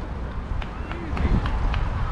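Outdoor ballfield ambience: a brief call from a distant voice partway through, over a steady low wind rumble on the microphone, with a few light ticks scattered through.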